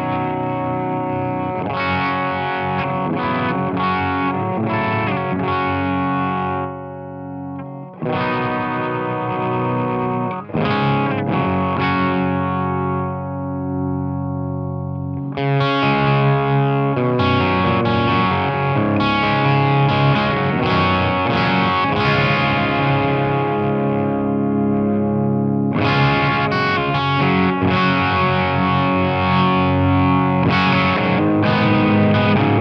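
Epiphone G400 electric guitar played through a Danelectro Surf n Turf compressor pedal and a Peavey Bandit preamp, playing phrases with chords left to ring and fade about a quarter and halfway through, then busier playing for the second half.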